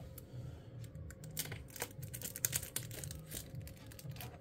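Faint, irregular light clicks and ticks of Pokémon trading cards being handled and shifted in the hand, over a faint steady hum.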